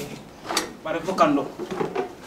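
A single sharp knock about half a second in, followed by a short spoken phrase.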